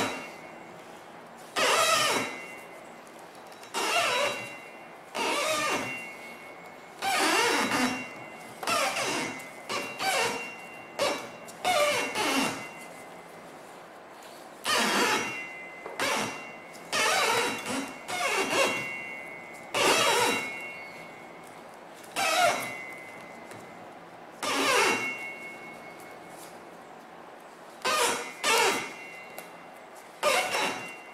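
Thin jute string being pulled taut and wound over a multi-break cylinder shell break by hand. It makes a string of short scraping pulls, some with a squeak, coming every second or two with a lull near the end.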